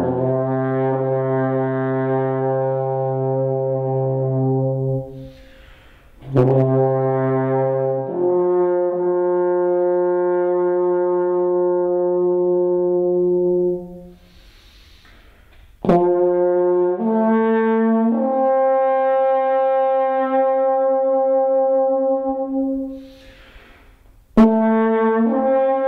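Alphorn playing a slow traditional Swiss tune in long held notes, phrases separated by short pauses with audible in-breaths. The notes step upward from low held tones to higher ones through the horn's natural overtones.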